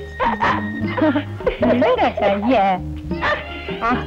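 Film song: a voice singing wordless, wavering phrases over an instrumental backing with a steady, stepping bass line.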